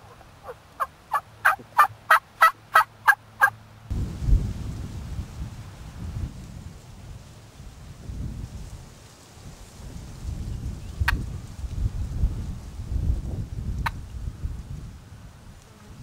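A series of about ten turkey yelps, evenly spaced about three a second and growing louder, in the first few seconds. After that, a low rumbling noise on the microphone with a couple of faint ticks.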